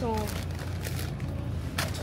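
Steady low hum of a large store's background noise, following the last word of a sentence, with a short rustle just before the end.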